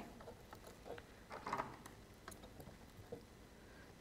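Faint scattered ticks and light crinkles of hands working a sheet of acetate while a 3 mm red liner double-sided tape is laid along its edge.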